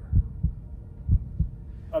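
Heartbeat sound effect: low double thumps, lub-dub, about one beat a second, two beats in all.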